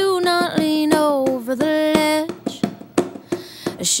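A female voice singing long, held notes that slide between pitches for about two seconds. A quieter gap with a few sharp taps follows, and the singing resumes near the end.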